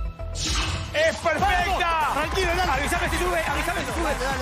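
A steady electronic beat, then about half a second in a burst of several excited voices shouting at once over the music.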